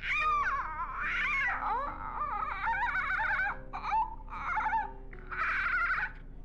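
A woman imitating wild animal calls with her voice: a run of rising-and-falling whoops, then a warbling stretch and a few short yelps near the end.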